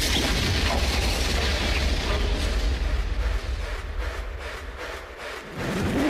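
Electronic dance track: a loud white-noise wash, like a crash or sweep effect, over deep bass. It thins out and fades about five seconds in, as the bass drops away.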